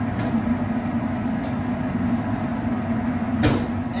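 Steady hum of kitchen machinery with a low tone under it, and one sharp knock about three and a half seconds in.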